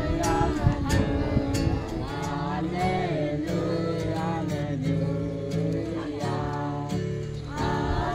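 A group of children singing a song together, with guitar accompaniment.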